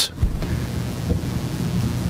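Courtroom microphone noise: a steady low rumble with an electrical hum underneath, from a faulty courtroom mic feed.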